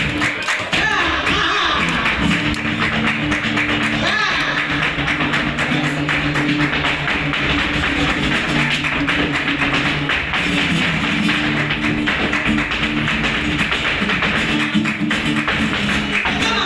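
Live flamenco: a dancer's rapid zapateado footwork, a dense run of sharp heel-and-toe strikes, over flamenco guitar and palmas hand-clapping.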